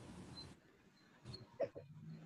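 Quiet pause on a video call's audio: faint room noise cuts out about half a second in, then a couple of faint short sounds come about one and a half seconds in.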